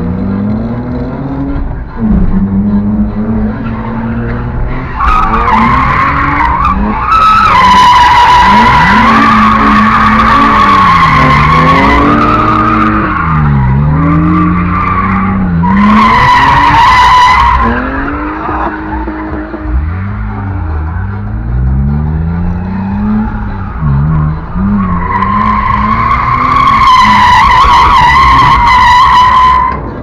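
BMW drift car heard from inside the cabin, its engine revving hard up and down over and over as it slides. Tyres squeal in long stretches: from about five to twelve seconds in, again briefly around sixteen seconds, and from about twenty-five seconds until just before the end.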